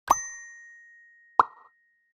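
Animated-button sound effects: a short pop with a bell-like ding that rings and fades over about a second, then a second pop about a second and a half in, as the notification and like buttons pop into colour.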